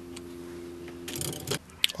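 A faint steady low electrical hum, which stops about one and a half seconds in after a short rustling noise, followed by a single light click near the end.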